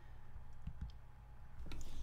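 A few faint clicks from someone working at a computer, over a low steady hum.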